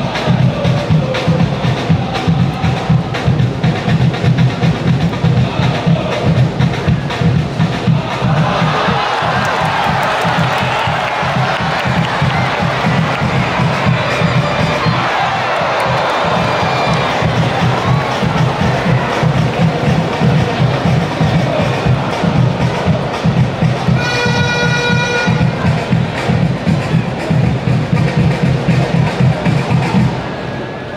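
Football supporters' drums beating a fast, steady rhythm under a chanting crowd. The crowd noise swells into a loud cheer from about 8 to 18 seconds in, and a brief held horn-like tone sounds about 24 seconds in.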